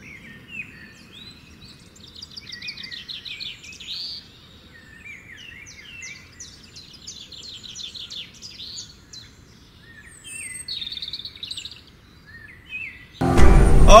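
Several wild birds singing and calling, fairly faint, in chirps, short rising and falling whistles and fast trills of rapidly repeated notes, over a low steady hiss of outdoor ambience. Just before the end it cuts abruptly to loud road and engine noise inside a moving car.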